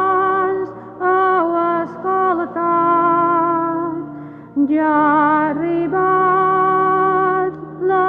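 Slow church hymn sung by a single voice over held accompanying notes. Phrases of long, sustained notes are broken by short breaks, the longest about four and a half seconds in.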